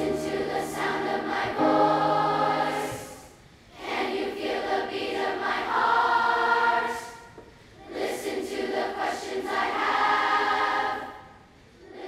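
Massed choir of sixth-grade children singing together, in three phrases separated by short breaks.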